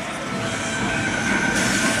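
A steady rushing mechanical noise with a thin, steady high whine through most of it and more hiss joining near the end.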